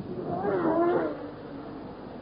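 A Formula One car's engine, its pitch rising and then falling over about a second.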